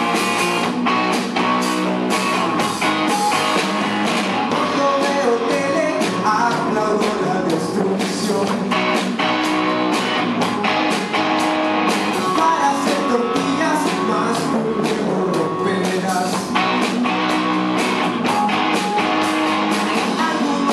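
Rock band playing live: electric guitars over a drum kit keeping a steady beat, with cymbal hits throughout.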